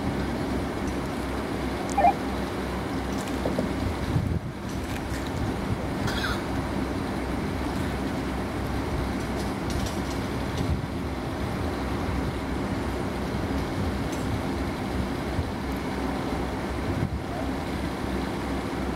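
Heavy diesel engine running steadily with a low hum, the crane's engine as it holds a rising pull on the bridge girder during a load test. A brief faint high squeak comes about six seconds in.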